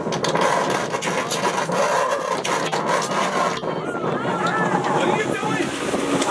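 Guests chattering over one another, several voices overlapping, over a steady noisy background.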